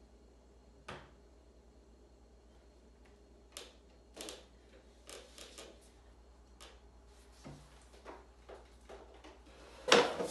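Quiet room tone with a low hum and scattered light taps and clicks, the small sounds of cups and hands at a table, with a louder knock right at the end.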